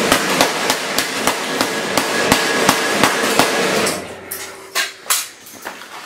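A hammer beating rapidly on a laptop, about three sharp blows a second, stopping about four seconds in, followed by two more blows a second later.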